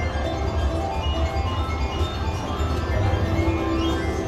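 Ultimate Screaming Links slot machine playing its bonus win tune, a tinkling electronic melody over a steady low beat, as the bonus win of $26.00 counts up.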